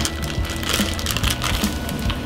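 Background music over the crackling sizzle of sliced steak, onions and peppers frying in a cast-iron skillet.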